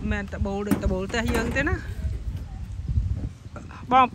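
A person talking through the first half, then a pause filled with a low rumbling noise before talking starts again at the very end.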